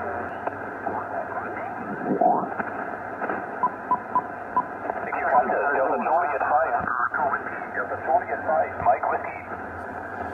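Shortwave receiver audio on the 40 m band in lower sideband: band noise under several overlapping, distorted voices that slide in pitch as the dial is tuned from 7.169 to 7.184 MHz. A row of five short beeps sounds about four seconds in.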